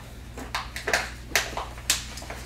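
Dishes and cutlery clinking about four times in short, sharp strikes, over a steady low hum in the room.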